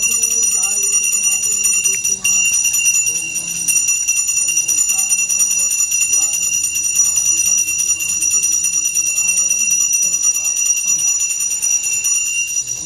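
A puja bell rung rapidly and without pause, giving a steady high ringing, with a voice reciting below it.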